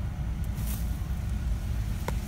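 Steady low rumble of city street traffic, with a brief faint hiss about half a second in.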